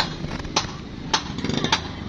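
Sharp, evenly spaced knocks, a little under two a second, over a steady low machine hum.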